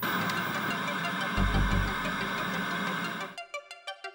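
Hiss of VHS-style TV static with a low rumble joining about a second and a half in. Just past three seconds it cuts off, and electronic music with a quick, even pulse begins.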